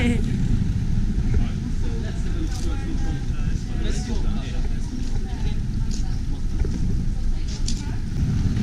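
Steady low rumble of several wheeled suitcases rolling over paving stones, mixed with wind on the microphone, with a few light clicks from the wheels crossing joints.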